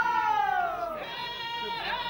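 A singer's voice in an Amazigh izlan chant of the Ait Warayn: one long note sliding down in pitch, then from about a second in a new note held steady.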